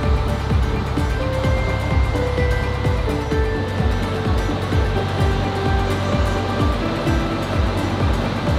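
Background music with held melody notes over a steady bass beat, about two beats a second.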